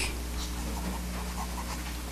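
A pause in speech filled with the steady low hum and hiss of an old recording, with a brief click at the start.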